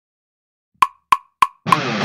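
Metronome count-in: three short clicks evenly spaced at 200 beats per minute, a fourth landing as a heavy metal track with distorted electric guitar comes in near the end.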